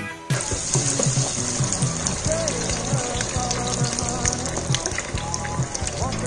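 Deep-fryer sizzle, a loud crackling hiss that starts suddenly just after the beginning, over background music with a steady bass line.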